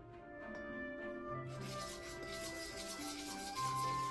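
Background music with held notes. Over it, from about a second and a half in until near the end, a scratchy rubbing: a metal spoon stirring flour in a stainless steel bowl.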